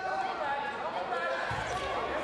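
Judoka's bodies hitting the tatami with a dull thud about one and a half seconds in, as a throw lands, over voices calling in the hall.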